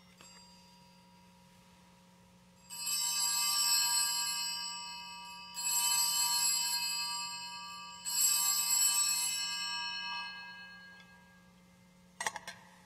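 Altar bells rung three times during the elevation of the consecrated host. Each ring is a cluster of high bell tones that fades over two to three seconds.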